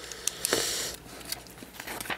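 Plastic LEGO bricks being handled and pressed into place, giving a few sharp small clicks, with a brief soft hiss about half a second in.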